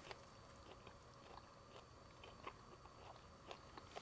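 Near silence with faint chewing of soft bread rolls: a few small, scattered mouth clicks.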